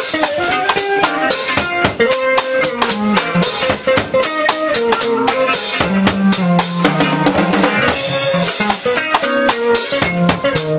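Live funk-jazz band playing: a drum kit to the fore with busy snare, rimshots and bass drum, over a six-string electric bass line and electric guitar.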